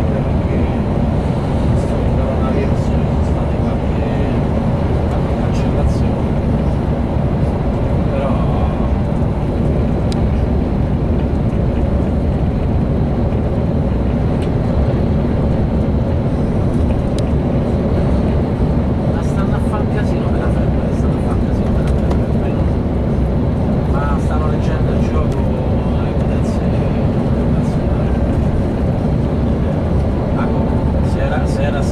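Steady drone of a coach travelling at motorway speed, heard from inside the passenger cabin: engine and tyre noise at an even level.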